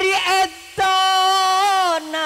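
A solo voice singing into a microphone with no audible accompaniment: a short phrase, then from just under a second in a long held note that wavers slightly and sags in pitch at the end.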